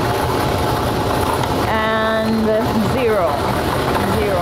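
Lottery ball-drawing machines running with a steady whirring rumble as the balls are mixed for the next draw. A voice is heard briefly about two seconds in, a held tone that then slides in pitch.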